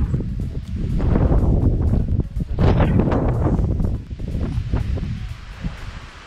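Gusty wind buffeting the camera microphone, with fabric rustling and handling noise; the wind eases somewhat near the end.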